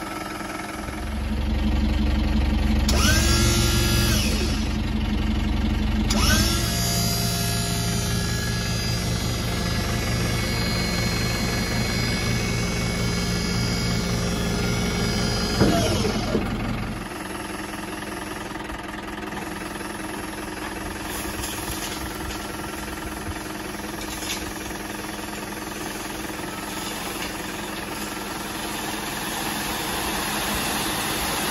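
Mahindra Bolero pickup's diesel engine held at raised revs to drive the hydraulic tipper pump, with a steady whine over the engine, as the ram lifts the load bed. About halfway through the revs drop and the engine settles back to a quieter idle.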